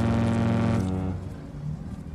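A cruise ship's horn sounding a single low blast about a second long, then dying away, as the ship comes into port.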